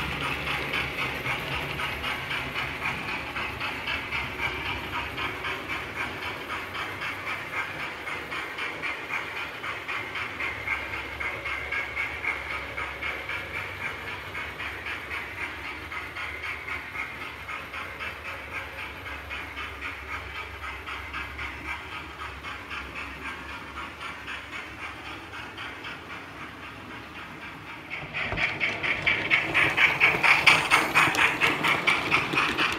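Steam locomotive chuffing in a steady, even rhythm with hiss, slowly fading away, then growing suddenly louder near the end as a locomotive draws close.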